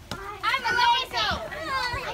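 Several girls' high-pitched voices calling out and chattering over one another during a ball game, getting loud about half a second in.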